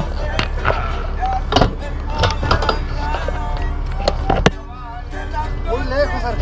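Men's voices talking over a steady low rumble, with several sharp knocks and rattles from the bike-mounted camera being handled; the loudest knock comes about four and a half seconds in.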